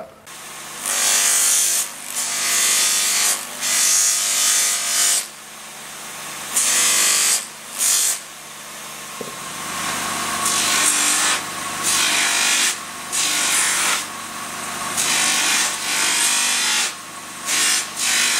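A bench polishing motor runs with a steady hum while a horn knife handle is pressed against its spinning brush wheel in repeated scrubbing passes, each a second or so long, to polish the horn. The motor's hum changes about nine seconds in.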